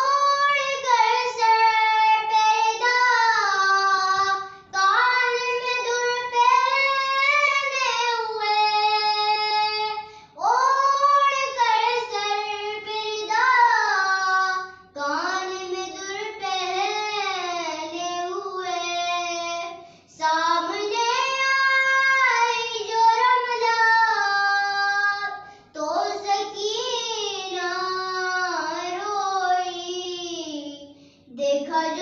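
A young girl's solo unaccompanied voice chanting a noha, an Urdu Muharram lament, in long melodic phrases with short breaths between them about every five seconds.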